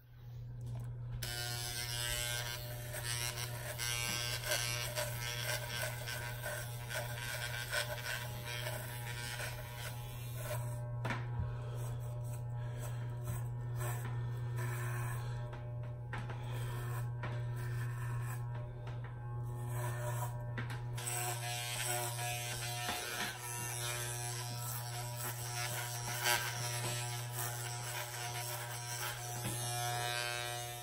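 Electric shaver buzzing steadily while it is run over the face and head, its pitch shifting slightly about three-quarters of the way through.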